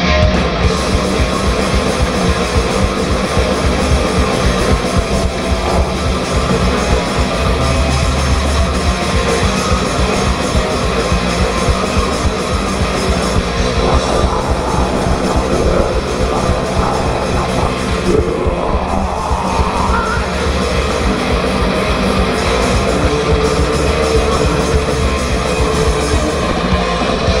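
A thrash metal band playing live and loud: distorted electric guitars, bass guitar and drums in a dense, unbroken wall of sound.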